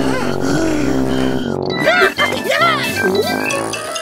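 Cartoon background music with a character's wordless vocal sounds: cries and grunts, with short pitch-swooping yelps in the second half.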